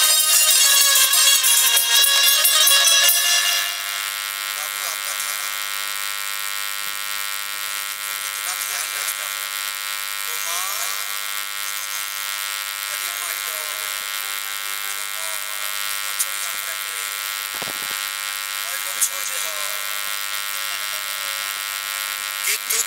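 Loud stage music cuts off about three seconds in, leaving a steady electric buzz with faint voices behind it.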